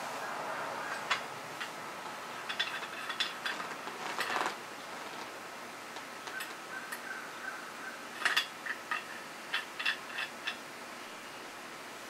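Scattered metal clicks and short rattles as the parts of a Crovel multi-tool shovel are handled and screwed together, with a few sharper clinks about a second in, around four seconds and around eight seconds.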